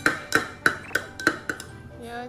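A metal spoon stirring in a drinking glass, clinking against the glass about three times a second with a short ring after each clink, over background music.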